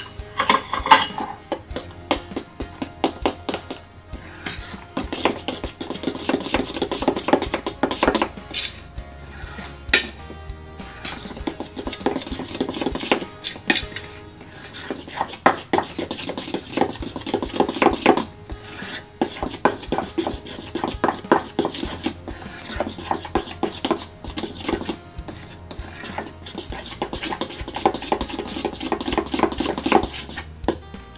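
A metal spoon stirring and scraping thick batter in a stainless steel mixing bowl, with rapid clinks against the bowl in spells of a few seconds and short pauses between. The flour is being mixed into a banana, egg and sugar batter.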